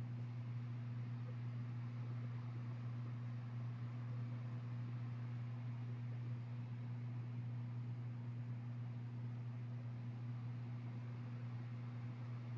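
Steady low hum with a faint hiss behind it, unchanging throughout; no other sound.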